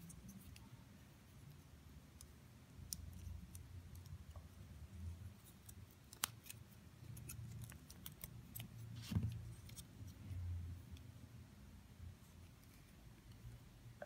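Faint clicks and taps of small plastic parts and carbon-fibre plate being handled and fitted on a miniature RC car chassis, scattered through, with the sharpest clicks about six and nine seconds in.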